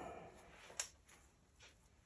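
Near silence: room tone, with one faint short click a little under a second in.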